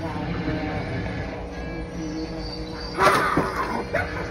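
Spirit Halloween Lil Skelly Bones animatronic playing its spooky sound-effect track as it activates: eerie sustained tones, then a sudden loud voice effect about three seconds in.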